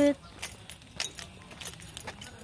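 Irregular light clicks and clinks, about two to three a second, from a person walking with the camera along a concrete path.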